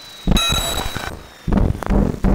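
Modular synthesizer output with no effects added. A sudden metallic, bell-like ping a moment in rings with several high overtones and fades over about a second. Low, sudden bursts follow about one and a half seconds in and again near the end.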